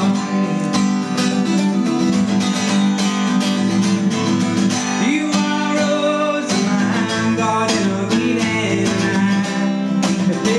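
Acoustic guitar strummed in a steady rhythm, played live as the backing of a folk-style song, with chords ringing between strokes.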